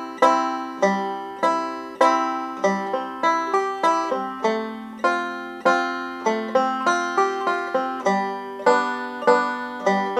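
Five-string banjo playing a waltz-time chord exercise in three-quarter time, plucking a C, F and G chord progression in the key of C with a steady run of picked notes.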